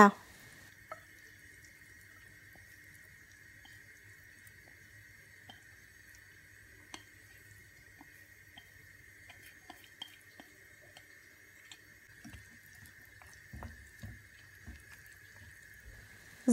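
Faint, sparse soft clicks and wet slaps of chopped squid, shrimp and vegetables sliding off a plate into a bowl of batter, a little denser near the end. A steady faint high-pitched hum runs underneath.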